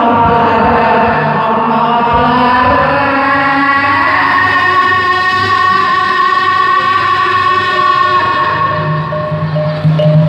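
A man singing one long held note into a microphone, amplified. The note steps up in pitch about four seconds in and fades out near the end, with low steady instrumental tones beneath.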